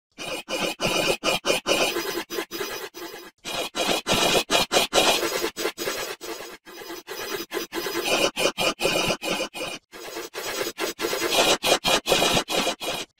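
Heavily distorted, processed effects-edit audio: a harsh, scraping, squealing sound chopped into rapid stuttering pulses. The same sequence loops four times, about every three seconds.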